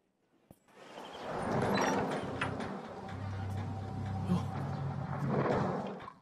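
A wooden door: a click about half a second in, then a long, steady scraping as the door is opened, fading out near the end.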